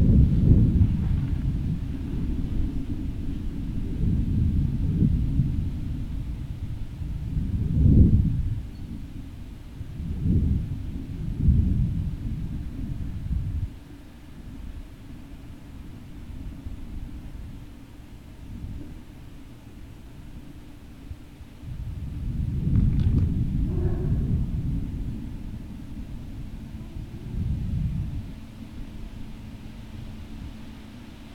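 Low rumbling noise that swells and fades in uneven gusts, louder near the start, a little past a third of the way in, and again past the middle: wind buffeting an outdoor microphone.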